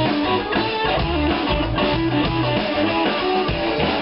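Live blues-rock band playing an instrumental passage: electric guitar to the fore over bass guitar and drum kit, with no vocals.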